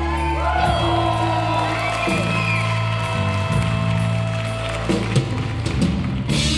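Live rock band playing an instrumental passage: electric guitar, bass and keyboards holding sustained notes that shift every second or two, with curving, gliding pitch sweeps in the first half and drum hits near the end.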